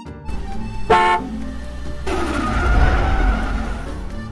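A car horn toots once, briefly, about a second in. A car engine then runs loudly for the last two seconds as the car pulls up.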